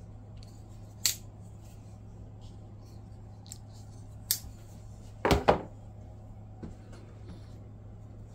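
Folding knives being handled on a rubber mat: a few short metallic clicks and light knocks, the loudest a double knock about five seconds in, over a faint steady low hum.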